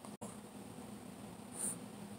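A short scratchy rustle about a second and a half in, from a Shih Tzu's face and fur rubbing against a rug, over a faint steady background hiss.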